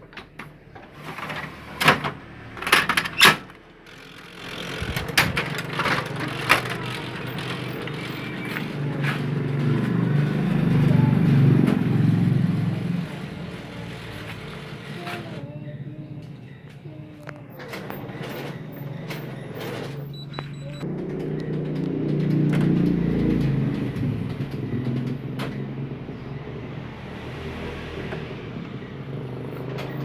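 Office photocopier starting a copy job: sharp clicks and knocks of paper and machine parts in the first few seconds, then the copier's motors and fans running, growing louder twice, once around ten seconds in and again a little after twenty.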